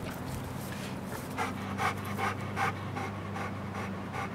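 American pit bull terrier panting hard, a steady rhythm of about two to three breaths a second, out of breath from tugging on a spring pole.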